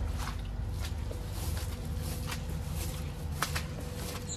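Footsteps on soggy, waterlogged lawn: a few soft separate steps over a low rumble, with a faint steady hum in the background.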